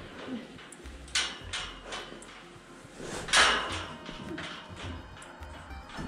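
Square hay bale dragged across a snowy barn floor in short scraping pulls, the loudest about halfway through, over background music.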